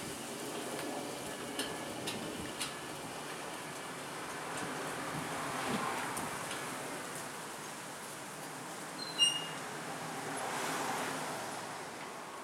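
Electric sliding-gate opener running a steel rolling gate shut along its track, with a steady rolling rumble that swells twice. About nine seconds in there is a sharp metallic clank with a brief high ring.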